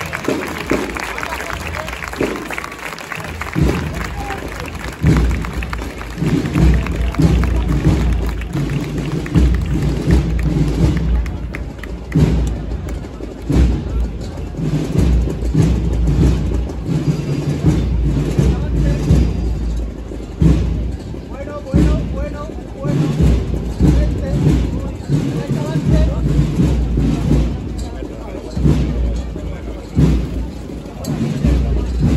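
Processional band music: held low notes over a steady, repeated drum beat.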